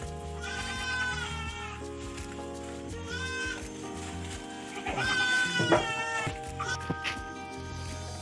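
Goats bleating about four times, each a wavering, quavering call, over background music with steady held tones.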